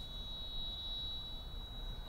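Quiet background with a low rumble and a faint, steady high-pitched whine, with no speech.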